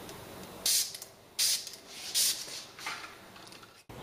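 Hand-held plastic spray bottle misting a houseplant's leaves: three short sprays about three-quarters of a second apart, then a fainter fourth.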